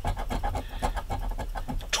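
A coin scraping the coating off a scratch-off lottery ticket in rapid, rhythmic strokes, several a second.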